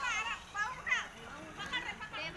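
Children's voices, high-pitched shouts and calls coming one after another.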